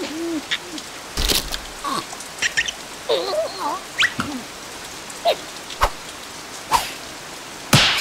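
Cartoon larva characters making short squeaky vocal noises that glide up and down in pitch, mixed with sharp clicks and knocks, over a steady patter of falling rain.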